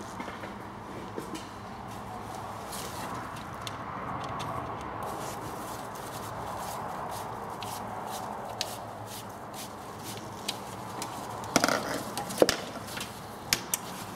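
Gloved hands working fuel hoses and their clips off an air-cooled VW Beetle engine: scattered small clicks and rustles over a steady background hiss, with a few sharper clicks about three-quarters of the way through.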